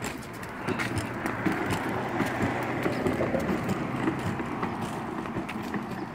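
Hard plastic wheels of a Step2 ride-on push car rolling over a concrete sidewalk: a steady rumble with a scatter of small rattles and clicks.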